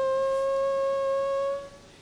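A single steady, whistle-like tone with overtones holds at one pitch and fades out near the end.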